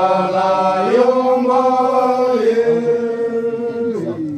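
A man chanting in long held notes that step slowly up and down in pitch, breaking off near the end.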